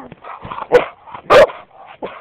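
A dog barking twice, two short sharp barks a little over half a second apart, the second one louder.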